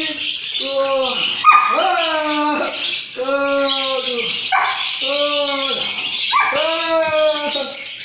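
A dog barking over and over in drawn-out, pitched barks, about one a second, each dropping in pitch at its end; one sharp yelp-like bark about a second and a half in is the loudest.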